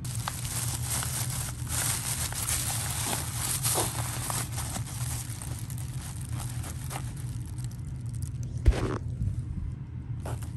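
Plastic bags crinkling and rustling as they are pressed down into a soft-sided fabric cooler, then the cooler's zipper being drawn shut, with one short loud rasp near the end.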